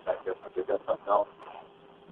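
People talking on a recorded 911 phone call, thin and unclear, with no words that can be made out. About halfway through the voices drop away, leaving a faint steady tone on the line.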